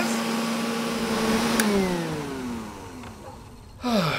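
Vacuum cleaner motor running with a steady whine, then switched off with a click about one and a half seconds in, its pitch falling as the motor spins down and fades.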